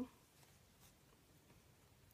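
Near silence with faint rustling of yarn and a crochet hook as single crochet stitches are worked into the chain.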